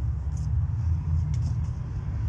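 Wind buffeting the microphone outdoors: an unsteady low rumble that wavers in strength.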